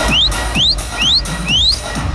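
Techno played loud over a festival sound system and heard from the crowd: a steady kick-drum beat with a rising whistle-like sweep repeating about twice a second.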